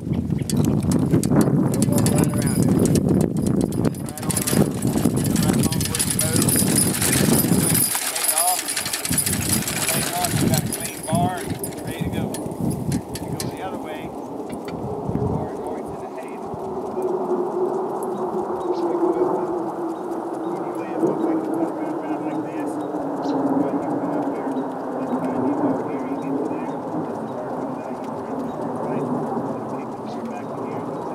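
Horse-drawn sickle-bar mower running behind a team of Belgian mules, its knife and gearing clattering. The sound is dense and loud for the first eight seconds or so, then lighter and steadier, with a slowly falling pitch.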